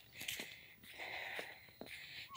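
Faint footsteps and breathing of a woman walking along a road, out of breath from climbing a hill. A few soft steps come through.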